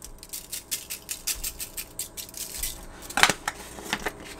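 Lawry's Seasoned Salt shaken from its plastic shaker over catfish fillets: a run of light rattling shakes, about three or four a second, with a louder shake about three seconds in.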